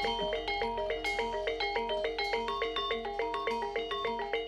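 Javanese gamelan with bronze metallophones playing a fast, evenly paced repeating figure of short, ringing struck notes, as accompaniment to a barongan dance.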